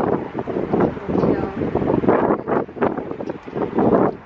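Strong wind buffeting the camera microphone in uneven gusts, with muffled voices mixed in; it drops off suddenly at the end.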